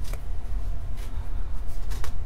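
Soft rustling of a crocheted yarn hat and yarn tail being handled and pulled, a few brief rustles about a second apart over a steady low rumble.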